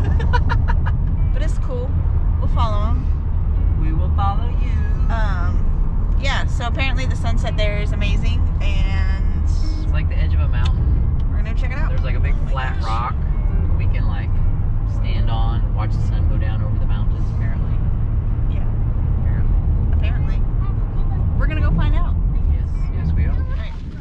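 Steady low road and engine rumble inside a moving minivan's cabin, with voices talking in the background over it. The rumble cuts off just before the end.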